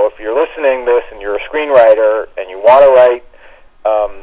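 Speech only: a person talking in short phrases, the voice sounding thin, with little above the middle of the range, as over a phone line. It breaks off for a moment about three seconds in, then picks up again.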